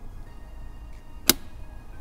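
A single sharp click a little past halfway, from the spring-loaded cover of a car's 12-volt power socket, over faint background music.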